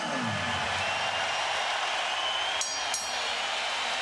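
Arena crowd noise, a steady mass of cheering and clapping, broken near the end by two quick strikes of the ring bell, the signal that starts the final round.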